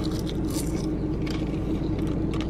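Roasted seaweed snack being crunched and chewed, with short crinkles from its plastic package, over a steady low hum inside a car.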